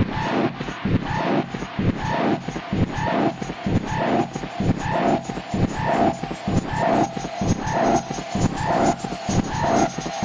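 Dark electronic techno: dense, noisy synth textures with a mid-pitched pulse repeating evenly about twice a second.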